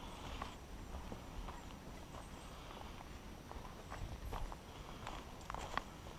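A hiker's footsteps on a dirt forest trail scattered with dry leaves: irregular soft crunches and thuds, with a slightly louder pair near the end.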